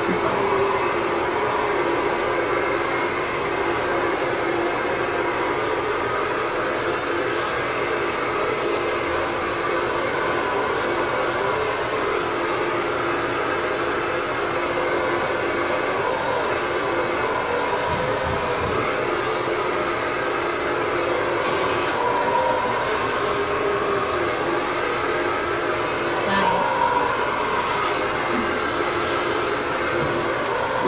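Electric hair clippers fitted with a guard, running with a steady hum as they cut through long hair.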